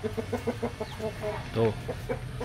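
Chickens clucking in a quick, even run of short notes, about six a second.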